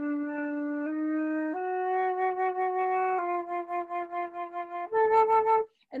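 Solo flute playing a slow, smoothly joined phrase of five held notes, opening on low D and climbing by small steps. The later notes waver with vibrato, and the last and highest is the loudest before the playing stops just short of the end.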